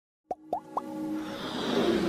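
Animated logo intro sound effects: three quick pops, each rising in pitch, within the first second, then a swelling riser that builds steadily under held synth tones.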